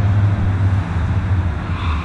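Steady low rumble of road traffic on the highway below.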